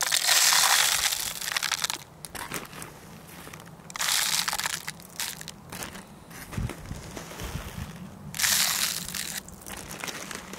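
Mixed birdseed poured into a clear plastic bottle feeder in three rushes: the first, about two seconds long, right at the start, then again at about four seconds and about eight and a half seconds. Quieter rustling between the pours and a dull thump between the second and third.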